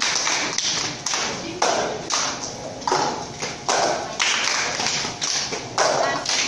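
Cup-game rhythm played by several people in unison: hand claps and plastic cups tapped and set down on a tile floor, in a steady beat of about two strokes a second.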